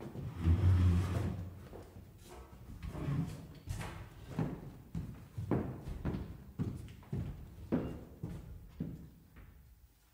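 A piano bench thuds as it is moved and set in place, followed by a series of footsteps, about one a second.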